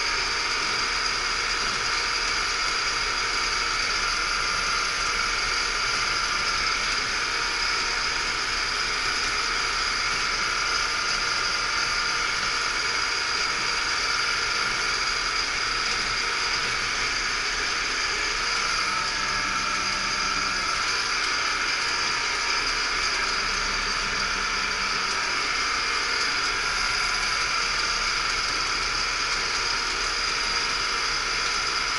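Yanmar tractor running steadily at road speed, heard from inside its cab: an even engine and drivetrain drone with a steady high-pitched whine over it.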